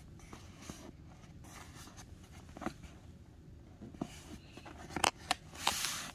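Sheets of printed sublimation transfer paper being handled and slid into position on a table. Soft paper rustles and a few light taps, with a louder brief rustle near the end.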